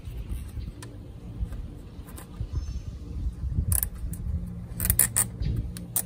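Nylon zip ties being pulled tight around a coil spring: a few scattered clicks, then a quick cluster of clicks near the end, over a steady low rumble of wind on the microphone.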